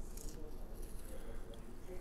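Faint handling sounds of a small plastic supplement bottle as its wrapper is peeled off, with a soft rustle near the start.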